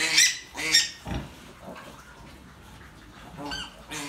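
Newborn piglets giving short, high squeals while suckling a Gloucester Old Spot sow: a couple near the start and one near the end, with a quieter stretch between.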